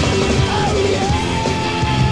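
Loud rock music with a band playing, and a long held high note sliding in about a second in.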